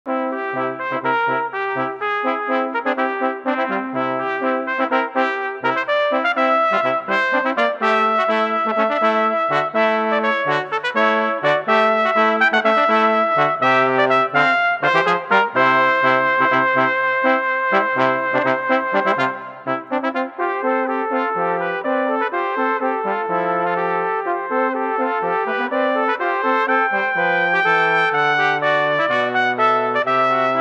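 Brass trio of two cornets and a tenor trombone playing a sustained, chordal piece in three-part harmony, the trombone carrying the low line under the two cornets. The music thins briefly about two-thirds of the way through, then goes on.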